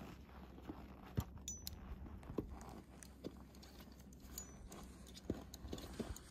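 Faint, scattered clicks and taps of climbing hardware and boots on rock as a climber slides an ascender up a fixed rope, over a steady low rumble.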